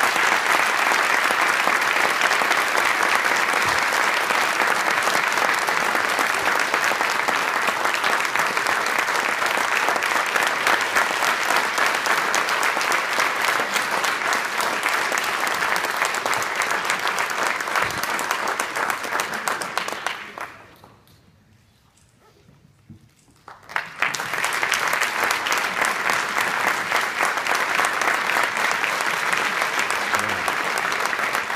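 An audience applauding with loud, sustained clapping. It fades out about twenty seconds in, is nearly silent for about three seconds, then starts again at full strength.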